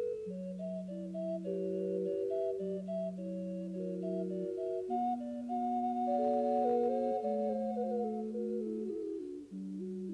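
Ensemble music of several clean, steady-pitched parts moving in close harmony over long held bass notes, with a brief dip in level near the end.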